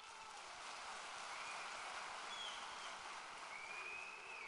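Audience applause: a faint, steady clapping that rises at the start and holds evenly.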